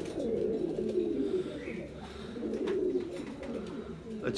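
Domestic pigeons cooing, low, wavering coos repeating through the whole stretch, with a few faint clicks.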